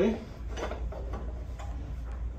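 Faint metallic clicks and light scraping of a metal joist hanger being fitted by hand against a timber beam, over a steady low hum.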